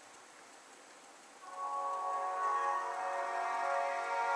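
Music played through the Orange San Francisco II smartphone's built-in loudspeaker, coming in suddenly about a second and a half in after near silence, with held notes.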